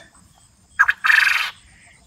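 A quail crowing once, about a second in: a short harsh note followed by a longer rasping one.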